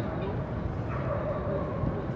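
A dog's drawn-out call about a second in, over a steady low background rumble.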